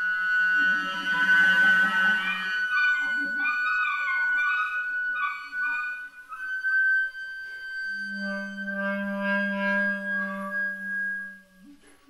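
Flute and clarinet duo playing contemporary chamber music: a low held clarinet note under shifting, wavering upper notes, then a long high held flute note joined by the clarinet's low held note. Both notes die away shortly before the end.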